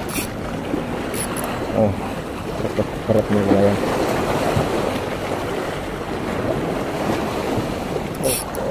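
Sea waves washing against rocks, with wind on the microphone: a steady rushing noise.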